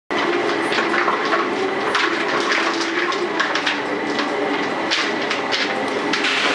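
Busy bakery working noise: a steady bustle with frequent short knocks and clicks of clattering trays and tools.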